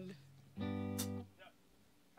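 A single guitar note held for under a second, steady in pitch, then cut off suddenly, with a click near its end.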